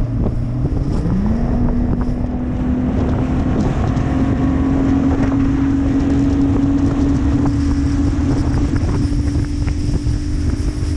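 Bass boat's outboard motor running under way. Its pitch rises about a second in as the boat speeds up, then holds steady. Wind buffets the microphone and water rushes along the hull.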